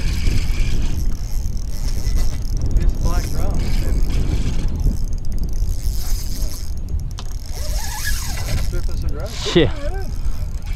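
Fishing reel's drag running as a heavy hooked fish strips line, over a steady low rumble.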